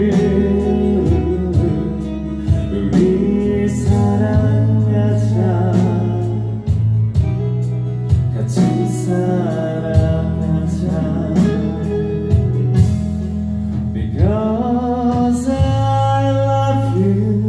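Live band playing a song: a lead vocalist singing over electric and acoustic guitars with a steady beat.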